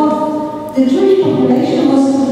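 Singing in long held notes, with a shift to a new note about three quarters of a second in.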